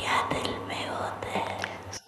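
A voice whispering, breathy and without clear pitch, over a low steady hum.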